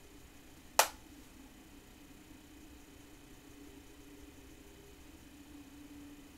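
A single sharp click about a second in, over a faint steady low hum.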